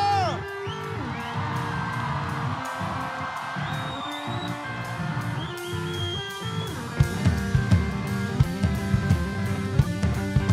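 Live rock band playing: electric guitars over drums, with a falling pitch glide right at the start. About seven seconds in the drums come in harder with strong regular hits.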